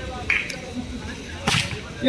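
A sharp slap about one and a half seconds in: a volleyball struck hard by a player's hand.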